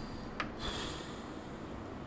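A single sharp click, followed at once by a short breath out through the nose, over a low steady room hum.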